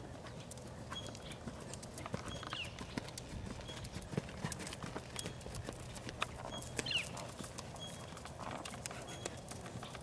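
Hoofbeats of a ridden horse moving around a dirt arena, a run of irregular strikes throughout.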